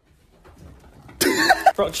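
Faint rustling, then about a second in a sudden loud cough-like vocal outburst with short pitched bends, running into a startled "Oh".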